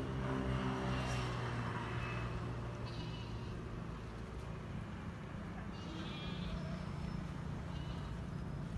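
Grazing flock bleating: wavering high calls about three seconds in and again around six seconds, over a steady low hum.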